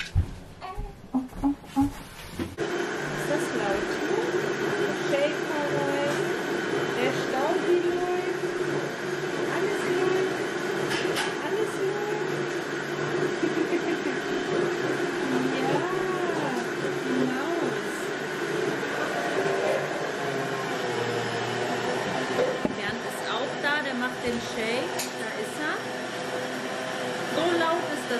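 A few low thumps, then a countertop blender running steadily, mixing the breakfast shake, with faint voices over it.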